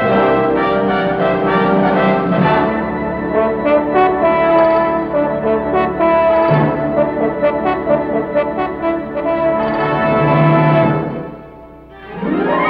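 Orchestral title-theme fanfare led by brass, in long held chords, fading out near the end.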